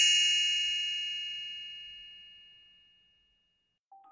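A bright metallic chime, struck just before, rings on and fades away over about three seconds: the signal to turn the page of the read-aloud book.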